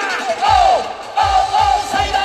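Live band music with a male singer's amplified voice singing over the band; a steady bass-drum beat is absent for about the first half second, then comes back in.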